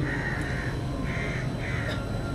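A bird calling three times in quick succession, short harsh caw-like cries, over a steady low background.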